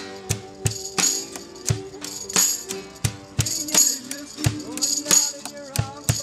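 Live acoustic band playing an instrumental break: strummed acoustic guitars over a steady drum beat, with a stand-mounted tambourine jangling on the accents.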